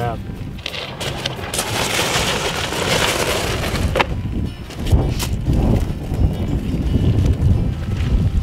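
Crunching on gravel, with a noisy stretch in the first half and a couple of sharp knocks about halfway through, then a low buffeting rumble of wind on the microphone.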